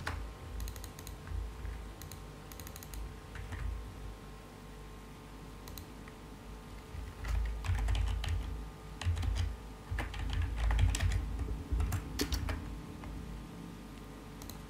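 Scattered light clicks and taps in small clusters, with louder low thuds between about seven and thirteen seconds in.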